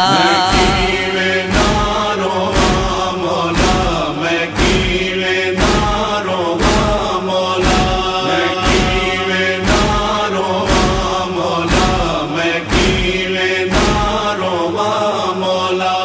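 A noha interlude: a chanted vocal refrain of held notes over a steady, heavy beat of about one stroke a second.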